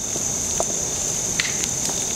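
Couch bonfire burning and crackling, with a few sharp pops. A steady high-pitched whine runs underneath.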